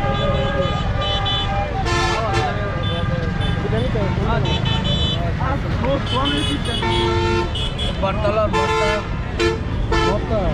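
Vehicle horns honking in street traffic: several blasts about two seconds in, around seven seconds and again near nine seconds, over a steady low traffic rumble.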